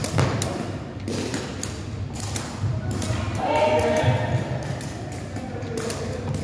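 Shuttlecock (jianzi) being kicked back and forth, with irregular sharp knocks of shoes striking the shuttlecock and feet on a wooden floor, two or three a second, in a large hall. A voice calls out briefly about halfway through.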